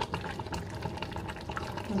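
A pot of egusi soup simmering on the stove, bubbling with many small irregular pops and crackles.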